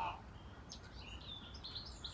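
Small birds chirping faintly in short, high notes, a few scattered calls over a low steady background.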